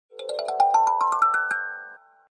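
Logo jingle: a quick rising run of about a dozen bell-like struck notes climbing steadily in pitch, then ringing out and fading.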